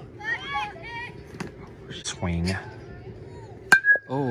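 A single sharp ping of a metal baseball bat hitting the ball near the end, with a short ringing tone after the hit.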